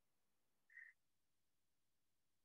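Near silence, broken once, just under a second in, by a single brief, faint, high-pitched chirp.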